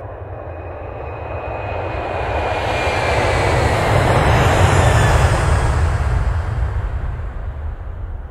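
Wind rushing over the microphone of a selfie-stick action camera as a tandem paraglider launches and lifts off, a steady rush with a low rumble that swells to its loudest in the middle and eases toward the end.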